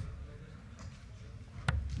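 Steel-tip darts striking a bristle (sisal) dartboard: two sharp thuds, one at the start and one near the end, over a low room hum.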